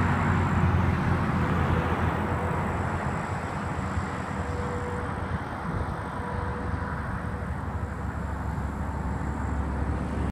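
Highway traffic passing: a steady rush of tyres and engines, a little louder near the start and near the end.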